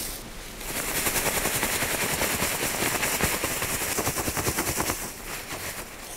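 Dry forest leaf litter being shaken through a cloth-sided soil sieve: a fast, even rattling of leaf fragments in the sieve, about six shakes a second. It starts just under a second in and stops about a second before the end.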